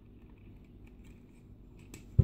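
Faint, scattered clicks of a bootleg G1 Weirdwolf Transformers figure's plastic parts and joints as it is handled and moved, with a pair of sharper clicks near the end.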